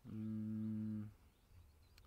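A man's hesitation hum, a single 'mmm' held on one flat pitch, stopping about a second in.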